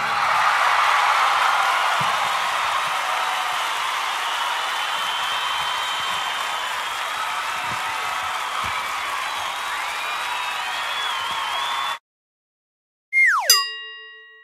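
Crowd cheering and applauding, a steady noise that slowly fades and cuts off abruptly about twelve seconds in. After a second of silence, a quick falling swoosh ends in a ringing chime.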